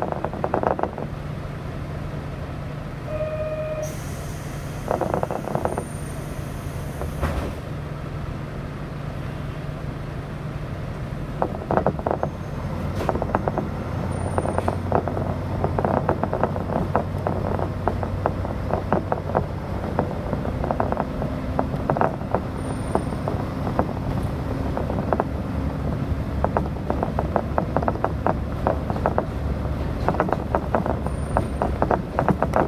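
Diesel railcar idling at a station. About three seconds in there is a short beep, followed by a few seconds of hissing air. From about twelve seconds in the engine note changes and rattling and clicks build as the train pulls away.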